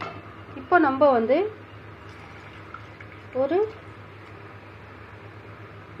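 A woman's voice speaking in two short phrases over steady low room noise with a faint hum.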